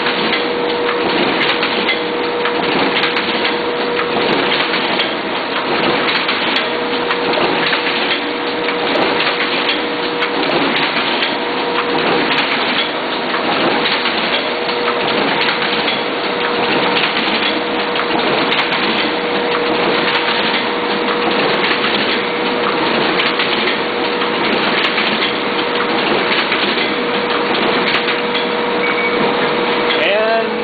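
Duplo System 4000 twin-tower collator and stitch-fold bookletmaker with trimmer running in production. It makes a loud, steady mechanical din with a constant hum and a clatter about once a second as sheets are fed, stitched, folded and trimmed.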